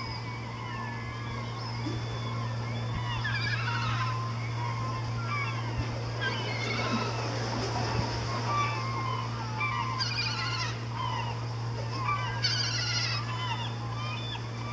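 Birds calling: many overlapping short chirps and calls, with bursts of fast high trills about 3 s in, about 10 s in and near the end, over a steady low hum.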